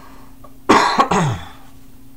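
A man coughing, a short double cough about two-thirds of a second in.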